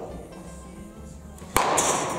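Wooden baseball bat cracking against a hardball once, about one and a half seconds in, sharp and loud.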